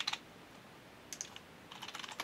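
Computer keyboard keystrokes: a short run of typing at the start, then a few scattered key presses about a second in and near the end.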